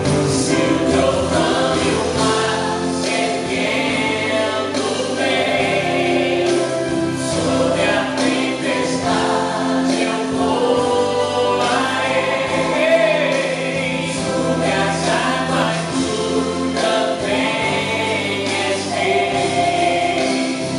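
A man singing a Portuguese gospel song live into a handheld microphone over recorded accompaniment, continuous and steady throughout.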